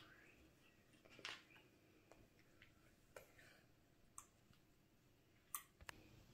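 Faint clicks and taps of small plastic food-colouring dropper bottles being handled and squeezed over glass dishes, about five of them spread over a near-silent stretch, the loudest about a second in and near the end.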